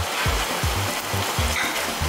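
Chicken and cabbage sizzling in a hot tabletop pan as they are stirred with a wooden spatula, over background music with a steady beat.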